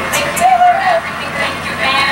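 A voice with one short, wavering, high-pitched cry about half a second in, over a steady background hiss.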